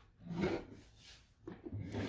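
Perfume bottles and small items handled and slid on a wooden tabletop: soft rubbing and scraping, once about half a second in and again near the end.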